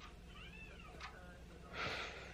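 A faint, short cat meow that rises and falls in pitch about half a second in, followed near the end by a soft breathy rush of air.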